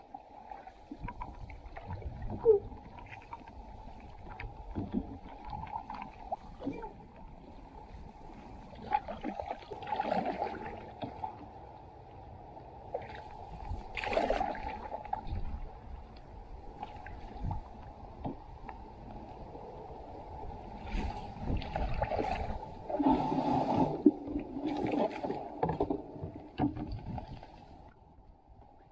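Open canoe being paddled in the rain: paddle strokes splashing in the water, irregular knocks of the paddle against the hull, and a steady low wash of rain and wind. The strokes and splashes come in louder stretches, the busiest a few seconds before the end.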